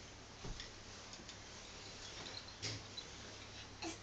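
Faint, irregular light wooden clicks and knocks from a wooden toy train's cars as they are pushed along a play mat.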